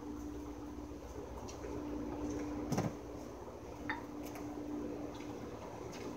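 A single sharp metallic clink about three seconds in, from chrome dumbbells handled and set down on a patio table, with a smaller tap a second later over a faint steady hum.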